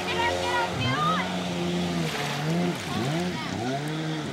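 Stand-up jet ski engine revving up and down repeatedly as the rider gets back on and pulls away, with water splashing.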